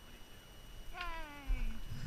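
A person's drawn-out, meow-like vocal sound that slides down in pitch for just under a second, starting about a second in. Low thumps from the handheld camera being moved follow near the end.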